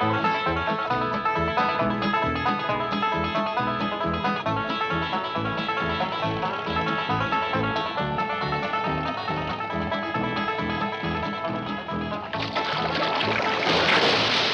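Bluegrass banjo music: fast picked banjo notes over a plucked bass line. Near the end a loud rush of splashing water comes in over it.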